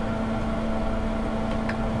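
Steady machine hum, with a constant low tone and a fainter higher one over an even rushing noise.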